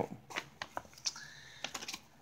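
Scattered light clicks and soft rustling of hands unwrapping a mailed package and pulling out a fleece scarf.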